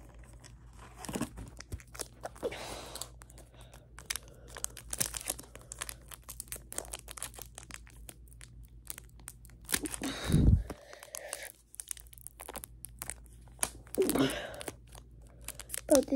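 Pokémon booster-pack wrappers being torn open and crinkled by hand, a steady run of short sharp crackles and rustles. A louder thump comes about ten seconds in.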